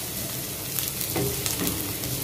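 Sliced onions and green chillies sizzling in oil in a metal karahi while a wooden spatula stirs them, with a few scrapes against the pan about a second in.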